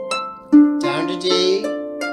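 Lever harp plucked one note at a time in an ascending broken-chord exercise through a 1-6-2-5 progression (C, A, D, G), the notes ringing on over each other. A loud low note is plucked about half a second in, followed by several higher notes.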